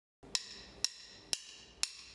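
Four short, sharp wood-block-like clicks, evenly spaced about two a second: a percussion count-in just before a song starts.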